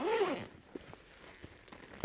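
Backpack's main compartment being unzipped and opened, heard as faint fabric rustling and a few light clicks. It follows a brief vocal sound at the very start.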